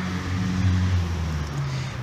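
A low, steady engine hum with no break or change in pitch.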